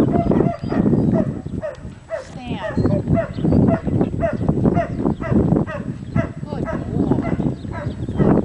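A farm animal calling over and over in short pitched calls, about two a second.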